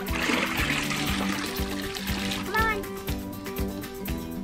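Background music with a steady beat, over water splashing and dripping for the first couple of seconds as wet cotton shirts are lifted out of a bucket of water.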